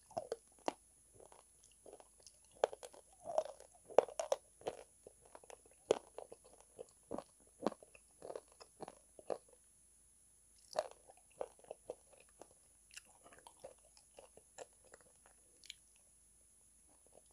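Close-miked biting and chewing of calabash chalk (ulo, a kaolin clay) coated in brown cream paste: irregular sharp crunches, with a short lull about ten seconds in.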